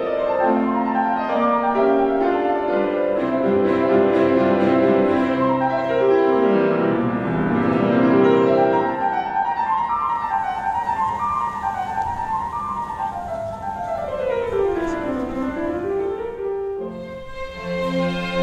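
Classical piano music: a quick passage with long running scales sweeping up and down the keyboard, dipping briefly near the end before a new phrase begins.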